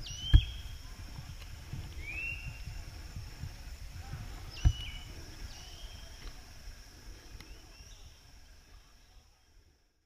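Riverside evening ambience: a steady high-pitched insect drone with a few short, gliding bird calls. Two sharp thumps, one about half a second in and one near the five-second mark, are the loudest sounds. Everything fades out at the end.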